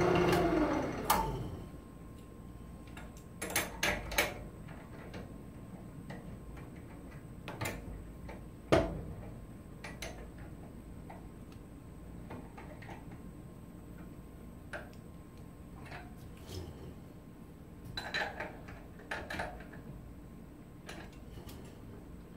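Scattered clicks and knocks of a bark-edged log section being handled and fitted onto a wood lathe that is not running. The loudest knock comes about nine seconds in, and a cluster of small clicks follows near the end.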